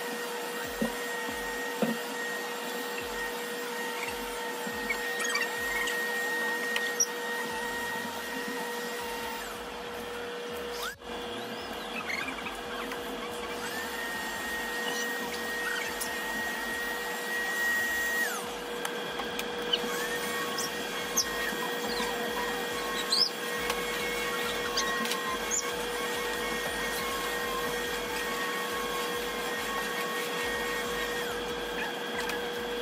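Deerma VC25 cordless stick vacuum running steadily as it is pushed over a rug and floor: a constant motor hum with a higher whine that changes pitch now and then. A few short sharp clicks are heard along the way.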